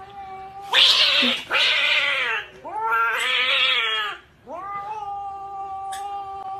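A domestic cat yowling in a run of drawn-out, wavering calls, harsh at first, with the last call long and steady. It is a defensive threat yowl from a cat standing with its back arched and its tail puffed.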